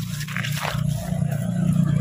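Blue plastic mesh basket scraped and scooped through wet grass and shallow water, rustling, over a steady low rumble.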